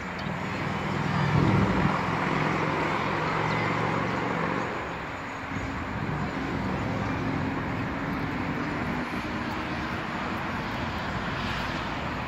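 Steady traffic noise, a continuous roadway rush with a low engine hum under it, loudest about a second and a half in.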